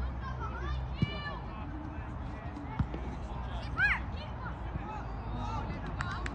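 Scattered distant shouts and calls from players and spectators on a soccer pitch, with a steady low background rumble. Two sharp knocks stand out, about a second in and just before the three-second mark.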